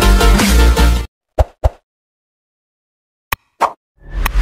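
Bass-heavy electronic intro music that cuts off abruptly about a second in, followed by silence broken by a few short pops and clicks.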